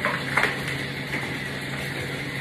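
A bundle of velvet hangers handled with a brief rustle and clatter about half a second in, over a steady rushing noise with a low hum.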